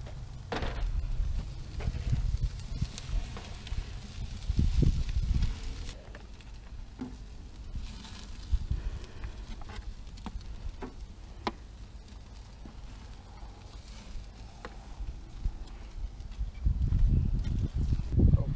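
Wind buffeting an unshielded microphone in irregular gusts, loudest about four to six seconds in and again near the end. Under it, a wood fire crackles and meat sizzles on a smoker grate, with scattered sharp clicks.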